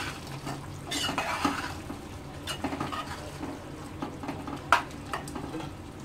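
A metal spoon stirring chicken pieces into a thick masala in a metal pot, with scattered scrapes and light knocks of the spoon on the pot and one sharper knock late on.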